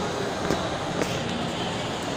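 Steady background din of a large indoor shopping-mall hall, with two light clicks about half a second and a second in.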